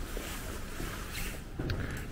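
Wind on the microphone: a steady low rumble with a soft hiss above it.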